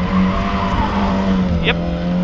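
Rally car engine running steadily under load, heard from inside the cabin.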